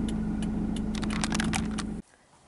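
Steady low hum of a running car heard from inside the cabin, with a string of light, irregular clicks over it that come thicker about a second and a half in.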